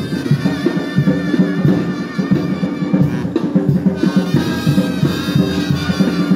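Band music with brass and drums playing a steady, lively beat accompanying a street procession dance.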